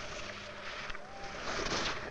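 Skis swishing across snow, several hissing sweeps with the loudest one near the end.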